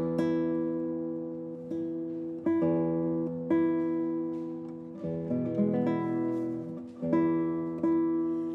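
Classical guitar played solo: a few slow plucked chords, each left to ring and fade before the next, the last one about seven seconds in.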